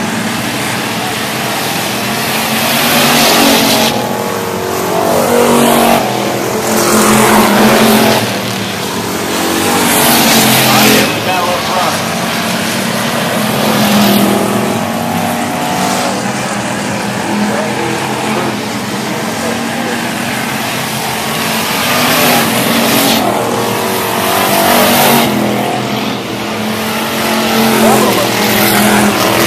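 Dirt-track factory stock cars' engines racing around the oval, swelling loud and fading again and again as cars pass close to the fence.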